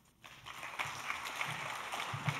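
Audience applauding, starting about a third of a second in and going on steadily.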